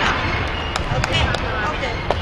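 Ambience of a busy gymnastics training hall: voices chattering across the room, with a few short, sharp thuds and knocks around the middle.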